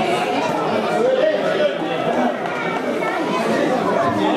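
Spectators' overlapping chatter, several voices talking at once with no single voice standing out.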